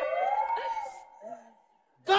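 A man's singing ending on a long held note that fades out, with a tone beneath it that rises and then falls. It dies away almost to silence before the end.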